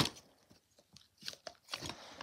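Fidget toys being shifted around by hand in a plastic drawer: a few faint rustles and light clicks in the second half.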